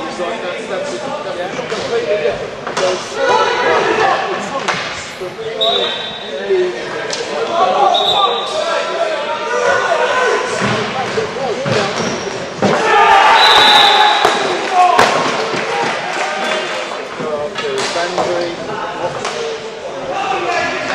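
Indoor hockey being played in a sports hall: sharp knocks of sticks on the ball and the ball striking hard surfaces, echoing, with players' shouts. Three short whistle blasts from the umpire, about six, eight and thirteen seconds in, the last during the loudest stretch of shouting.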